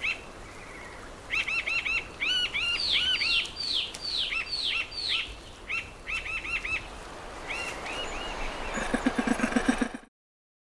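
Forest birds calling: many short arched chirps repeated in quick runs, and in the middle a series of louder notes that each slide downward in pitch. Near the end comes a rapid low pulsing sound, about eight or nine pulses a second.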